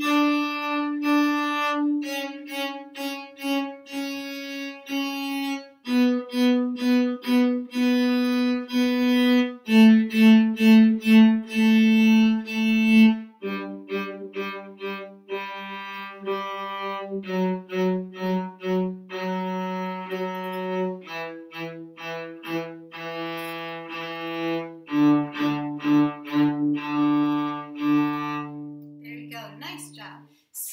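Solo cello playing a descending one-octave D major scale, from the D above middle C down to the open D string. Each note is bowed in a short-short-short-short-long-long rhythm.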